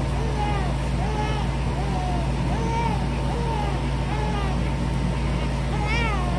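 A steady low mechanical hum, with short chirps that rise and fall in pitch repeating about twice a second over it.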